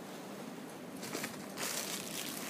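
Plastic bag crinkling and rustling as the folded hoop petticoat inside it is handled, the rustling starting about a second in.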